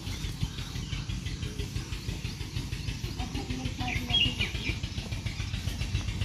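Outdoor ambience: a steady low rumble with birds chirping faintly, most clearly about four seconds in, and faint voices in the background.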